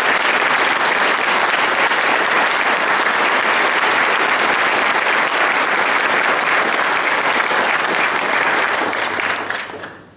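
An audience clapping steadily, with the applause dying away near the end.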